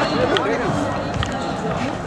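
Voices of people talking outdoors, with footsteps and handling noise as the camera is carried along at a hurried pace.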